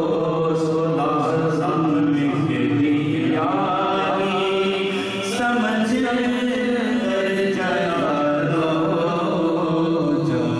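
A man chanting an Urdu naat without instruments, drawing out long, held, melismatic notes.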